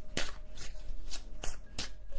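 A tarot deck being shuffled by hand: a run of short, sharp card snaps, about five in two seconds.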